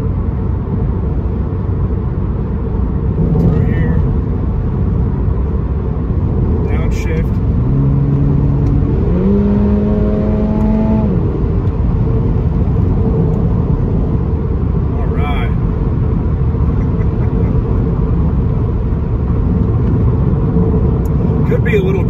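Cabin sound of a Toyota GR86's flat-four boxer engine and tyre rumble while driving. About eight seconds in, the engine note stands out and rises in two steps. It holds higher for about two seconds, then sinks back into the steady road rumble.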